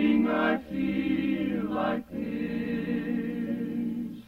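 Music: a wordless backing chorus singing sustained harmony, the chords changing with brief breaks between phrases.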